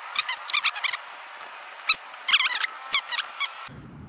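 Rapid clicking of keys on a compact tablet keyboard as a message is typed, with a brief lull about a second in. High, squeaky chirps sound along with the clicks.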